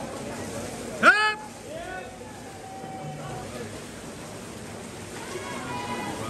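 A spectator's loud, drawn-out shout of encouragement about a second in, followed by fainter calls, over the steady noise of swimmers splashing and the crowd in the pool hall.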